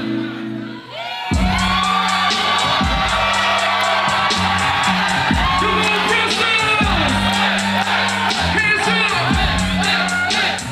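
Live hip-hop concert music over a venue's sound system: a held chord, then about a second in a heavy bass-and-drum beat drops in, with the crowd shouting and whooping.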